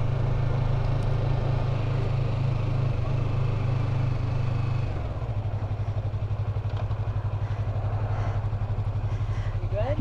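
Yamaha MT-03's parallel-twin engine heard from the rider's seat, running steadily. About halfway through it drops to a lower, evenly pulsing note as the bike slows.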